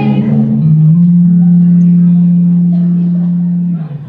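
Live band music heard from among the audience, with electric guitar. A single low note is held steady for about three seconds, then breaks off just before the end.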